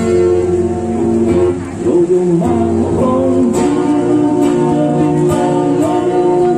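Acoustic guitar strummed about once a second, with a man singing into a microphone, amplified through a PA speaker.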